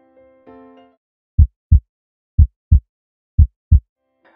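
A few soft electric-piano notes die away, then a heartbeat sound effect: three loud, deep double thumps (lub-dub), about one a second.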